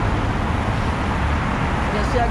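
Steady city street traffic noise: a continuous low rumble of passing road vehicles.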